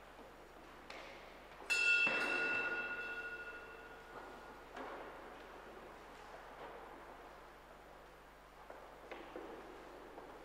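A small bell struck once about two seconds in, ringing and fading away over a couple of seconds, typical of the sacristy bell rung as the priest enters the sanctuary to begin Mass. A few faint knocks follow.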